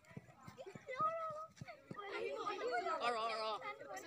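Several voices talking over each other, children's voices among them, building up from about a second in. A few light clicks and knocks come in the first two seconds.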